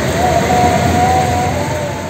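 Ranggajati passenger train moving out of the station: a steady rumble of the rolling train with a thin, slightly wavering whine over it, easing off toward the end.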